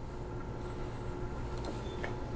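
Quiet room tone: a low steady hum with a few faint held tones, and a couple of faint soft handling noises near the end.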